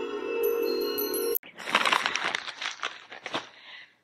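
Chiming intro music that cuts off abruptly about a second and a half in, followed by the crinkling of a plastic poly mailer being handled, fading out near the end.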